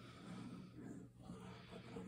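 Very faint, soft squeezing of a multipurpose liquid glue bottle as glue is laid onto cardstock, barely above room tone.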